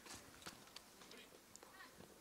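Near silence with a few faint, scattered clicks and ticks.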